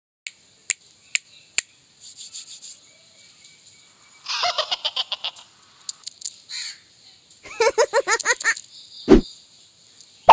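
Birds calling in rapid chattering bouts, with four sharp clicks in the first two seconds.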